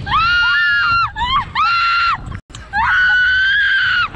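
Young women screaming while flung on a Slingshot reverse-bungee ride: three long, high-pitched screams with short breaks between them, over a low rush of wind.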